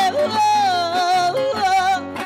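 A woman singing a Panamanian torrente in lamento style, holding long, wavering notes with short breaks between phrases. Two acoustic guitars accompany her.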